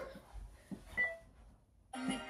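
Quiet room with a few faint taps and a single brief high beep about a second in.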